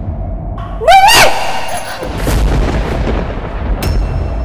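Dramatic TV-serial sound effects: a deep booming rumble, with a short, loud rising pitched cry about a second in.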